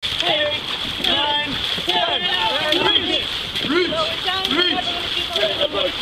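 Dragon boat crew paddling: paddles splashing through the water, with several voices calling out over the splashing.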